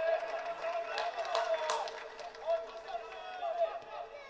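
Footballers' voices shouting and calling to one another on the pitch, with a few sharp knocks between about one and two seconds in.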